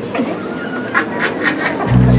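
Harsh bird calls, a quick run of about five notes about a second in. A deep, sustained low tone comes in right at the end.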